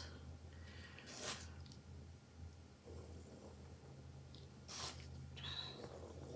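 Quiet room with a steady low hum, broken by a few short, soft breaths: one about a second in and two near the end.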